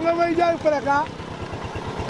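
A person's voice, drawn out, fills the first second. After it, a motorcycle engine carries on quieter as a steady low pulsing.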